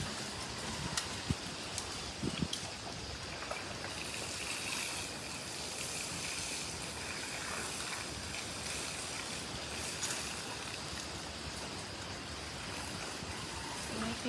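Water pouring from a plastic watering can onto dry soil, a steady light trickling and splashing, with a few faint clicks in the first three seconds.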